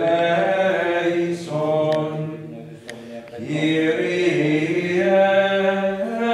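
Voices singing Latin Gregorian chant, long held notes moving stepwise in pitch, with a short break about two and a half seconds in before the chant picks up again.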